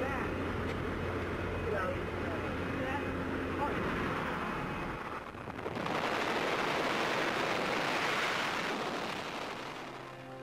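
Jump plane's engine droning steadily through the open door, with faint voices. About five seconds in, the drone gives way to a loud, even rush of freefall wind over the microphone as the skydiver leaves the aircraft.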